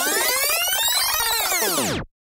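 Electronic sound-effect sting: a synthesized sweep of many tones that rises in pitch and falls back again, then cuts off suddenly.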